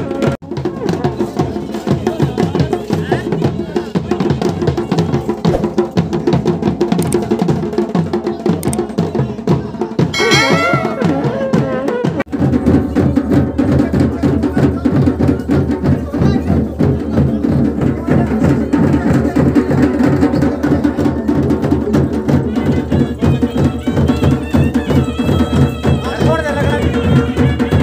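Traditional Himachali drum music beating a fast, steady rhythm. A high wavering tone rises over it briefly about ten seconds in, and the drumming turns fuller and lower after an abrupt break about twelve seconds in.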